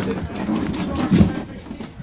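Low, muffled voices, growing quieter near the end.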